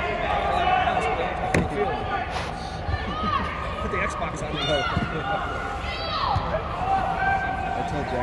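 Players and spectators calling and shouting across a soccer pitch inside a large sports dome, over a steady low hall rumble, with the sharp thud of a soccer ball being kicked about a second and a half in.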